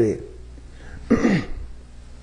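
A man clearing his throat once, briefly, about a second in, over a low steady hum.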